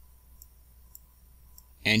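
Three faint computer-mouse clicks, roughly half a second apart, over a low steady hum.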